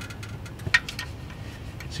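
Socket ratchet clicking in short irregular runs as the oil drain plug is tightened, with one sharper click about three quarters of a second in.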